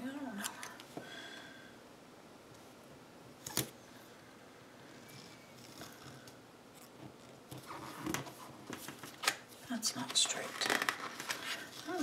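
Fingers handling a paper sticker and planner page as it is peeled up and re-pressed: faint paper rustling and rubbing, with a single sharp click a few seconds in. The rustling and scraping get busier over the last few seconds.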